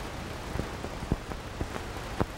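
Steady hiss with scattered sharp clicks and crackles, the background noise of an old television tape recording on a blank stretch. The clicks come mostly in the second half.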